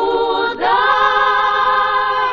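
Unaccompanied choir singing long held notes. There is a brief break about half a second in, then another sustained chord.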